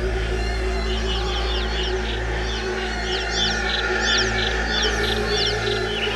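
Live-coded electronic music: a steady low drone with layered sustained tones, and from about a second in, clusters of short, quick bird-like chirps sweeping up and down high above.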